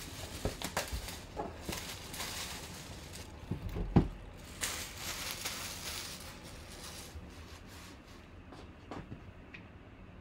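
A cardboard trading-card box being handled on a table: rustling and sliding cardboard with scattered light taps, and one sharp knock about four seconds in. The handling noise dies down toward the end.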